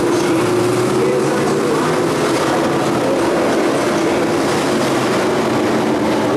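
Race car engines running, a steady mechanical drone with a slightly wavering pitch.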